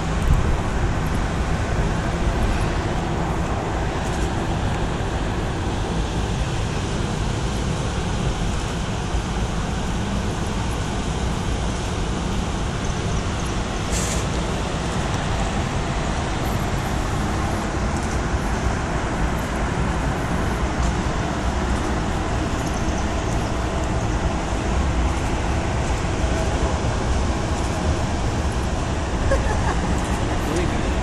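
Steady street traffic noise: a constant low rumble with no breaks.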